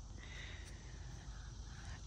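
Faint steady outdoor background noise with no distinct event: a low hum and a faint higher hiss.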